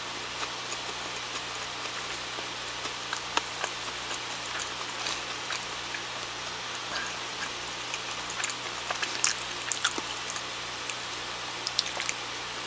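Close-up mouth sounds of someone chewing soft curry bread: scattered small wet clicks and ticks, with a quick cluster of them about nine to ten seconds in, over a steady low hum and hiss.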